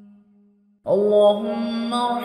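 A single voice chanting an Arabic supplication to a slow melody. A held note fades away, and after a short pause a new phrase starts a little under a second in on a long, sustained note.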